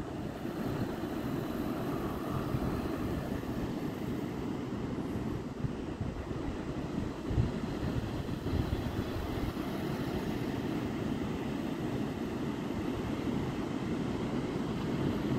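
Steady low rumble of wind buffeting the microphone over the wash of surf.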